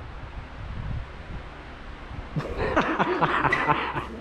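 Quiet room noise in a large shop. About two and a half seconds in, distant, indistinct voices start up and run on to the end.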